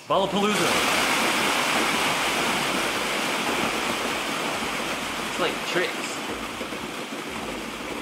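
Dense, steady rushing clatter of a mass of plastic ball-pit balls pouring out of a car's open doors onto a concrete floor, starting suddenly and slowly easing off.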